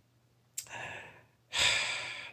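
A man breathing audibly in a pause between sentences. There is a faint click and a short, soft breath about half a second in, then a longer, louder breath from about one and a half seconds in.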